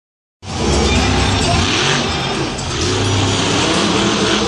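Monster truck's supercharged V8 revving, its pitch rising and falling as the truck drives across the dirt. The sound starts abruptly just under half a second in.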